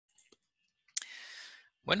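A couple of faint clicks, then a sharper click about a second in followed by a short hiss, before a man starts speaking near the end.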